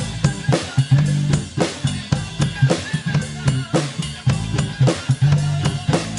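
Drum kit and electric bass guitar playing a song together: regular kick and snare strikes over a moving line of held bass notes.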